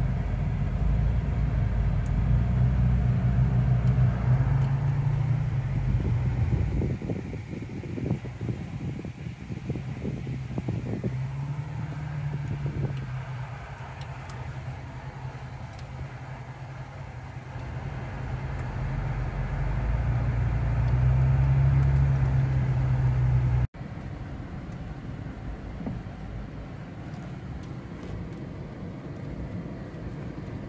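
Vehicle engine and drivetrain droning low and steady as heard from inside the cab while crawling slowly along a rough dirt trail, with irregular knocks and rumbles from the tyres and suspension over ruts in the middle. The drone swells about two-thirds of the way through, then drops suddenly to a quieter drone.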